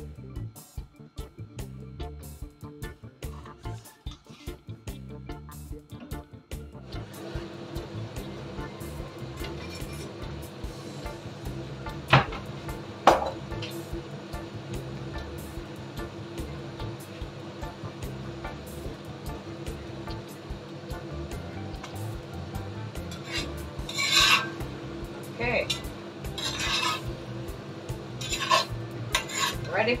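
Background music for the first seven seconds, then chicken pieces frying in a cast-iron skillet with a steady hum underneath. There are two sharp knocks about twelve and thirteen seconds in, and in the last several seconds a wooden spoon stirs the chicken against the pan in repeated strokes.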